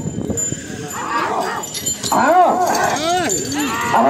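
Men yelling in repeated rising-and-falling cries, louder from about two seconds in, as handlers and onlookers urge on a pair of bulls dragging a stone block, over a low crowd rumble.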